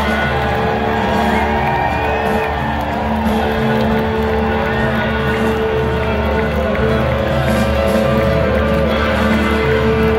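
A live rock band playing on stage, heard from far back in a large open-air amphitheater crowd: steady held low notes under a lead line that bends up and down in pitch, with no pause.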